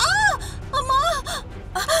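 A woman crying out in distress: a run of short, high-pitched cries that rise and fall in pitch, ending in an exclamation of "ayyo".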